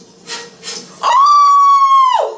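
A woman's long, high-pitched squealed 'ooh', held at one pitch for about a second and then sliding down, after two quick breaths.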